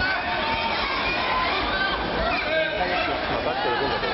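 Crowd of many voices in a large hall: overlapping calls and chatter, with no one voice standing out.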